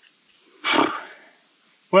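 Steady, high insect chorus. About three-quarters of a second in comes a short, breathy hiss.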